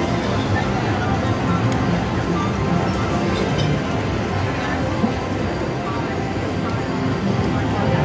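Reelin N Boppin slot machine playing its free-games bonus music while the reels spin.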